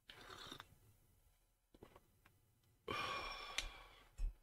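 A man sipping coffee from a mug: a short slurp at the start, a few faint swallowing clicks, then a satisfied sigh, an 'ahh', about three seconds in.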